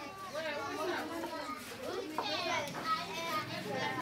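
A roomful of children chattering at once, many voices overlapping into an indistinct hubbub with no single speaker standing out.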